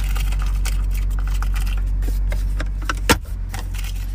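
Rustling and clicking of someone rummaging through small items inside a car, over a steady low hum, with one sharper knock about three seconds in.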